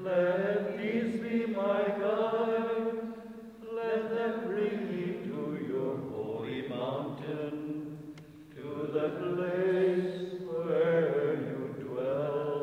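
Slow chanted singing in long held notes, in phrases separated by brief pauses about three and a half, six and eight and a half seconds in.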